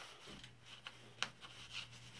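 Faint rubbing and a few light clicks from fingers turning the knobs and flipping the switches on the front panel of an unpowered vintage ham receiver, over a faint steady low hum.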